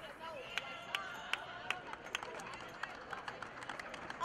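Scattered hand claps, a sharp clap about every third of a second, over faint chatter in a large arena.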